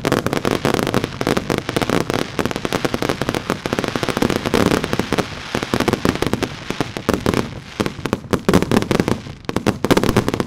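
Consumer fireworks going off in a dense, continuous barrage of rapid bangs and bursts, easing briefly about nine seconds in.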